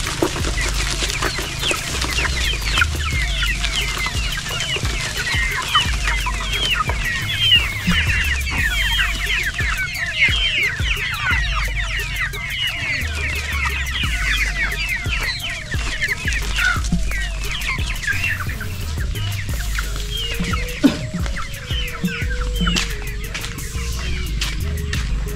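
A flock of half-grown chickens peeping and clucking: many short, high, falling cheeps overlap one another, growing sparser near the end.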